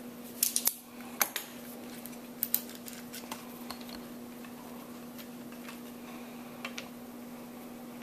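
Scattered light metallic clicks and clinks from hands handling a tester hose and its fittings on a flathead six engine block, most of them in the first few seconds and a last pair near the end. Under them runs a steady low hum.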